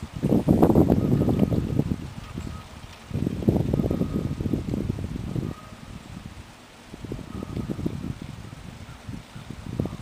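Wind buffeting the microphone in three gusts of low rumble, each lasting a couple of seconds.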